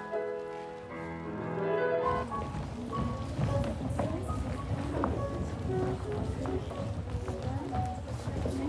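Rehearsal music breaks off about two seconds in. A studio full of ballet dancers in pointe shoes follows: many hard-toed steps clacking and scuffing on the wooden floor, with low chatter.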